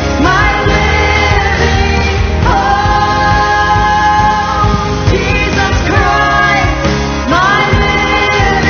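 Live worship band playing: a woman's lead vocal with backing singers over keyboard and guitars, singing long held notes in a slow phrase.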